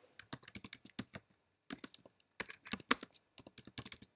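Typing on a computer keyboard: two quick runs of keystrokes with a short pause about a second and a half in.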